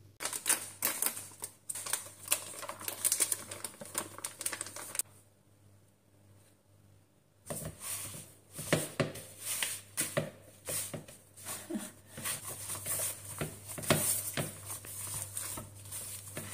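Rubber spatula scraping and knocking against a mixing bowl as it works stiff biscuit dough, in quick irregular clattering strokes. The strokes come in two spells with a quiet pause of about two seconds between them.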